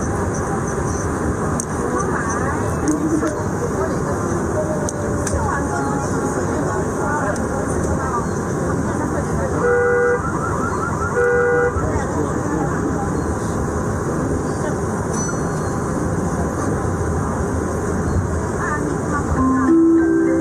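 Steady rumbling background noise with indistinct voices. Two short horn toots sound, about ten and eleven and a half seconds in.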